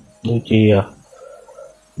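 A man speaking Khmer briefly, then a short pause in which only a faint, indistinct sound is heard before he goes on talking.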